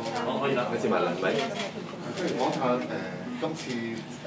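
Speech: a person talking throughout, with no other distinct sound.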